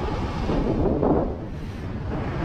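Wind rushing over the microphone over the low rumble of a motorcycle riding along at road speed.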